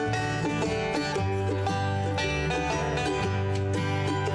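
Acoustic bluegrass band playing an instrumental intro: banjo picking over acoustic guitar and upright bass, at a steady, even loudness.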